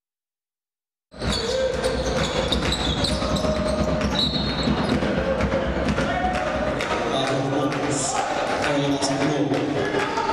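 After about a second of dead silence, the live court sound of a basketball game cuts in. A ball bounces on the hardwood floor with repeated sharp knocks, and players' voices call out in a large echoing hall.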